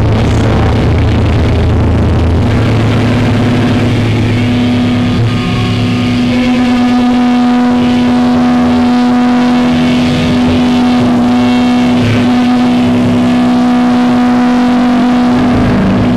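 Live hardcore band's distorted electric guitar and bass ringing out through the amplifiers in a loud, sustained drone, one steady low tone held throughout, with little or no drumming. The deepest notes drop out about five seconds in, leaving the held tones and amp noise.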